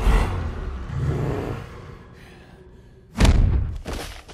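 Film sound effects: a heavy crash right at the start that settles into a low rumble of debris, then a sudden loud punch impact about three seconds in, with a booming low tail.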